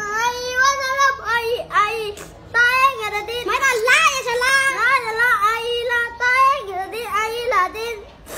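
A young boy's high voice chanting aloud in long, drawn-out notes that waver in pitch, with a short break a little past two seconds in.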